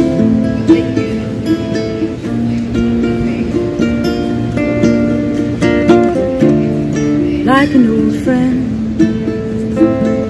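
Acoustic guitar and ukulele playing together: an instrumental passage of plucked and strummed chords, with no singing.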